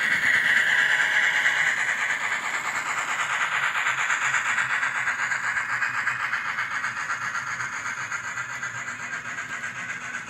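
N scale model freight cars rolling past close by, their small metal wheels making a steady rolling clatter on the track; loudest about half a second in, then slowly fading.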